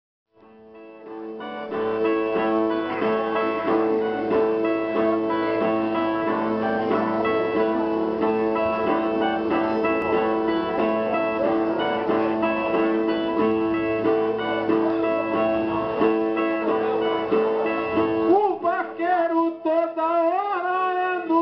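Two Brazilian ten-string violas (viola nordestina) playing a repeating plucked instrumental pattern, fading in over the first two seconds. Near the end a man's voice comes in, starting the sung verse of a repente.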